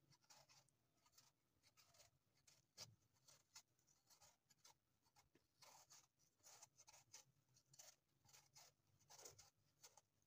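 Faint, quick scraping strokes of a kitchen knife paring the skin off an apple, the blade shaving the peel in short, irregular cuts, with one sharper tick about three seconds in.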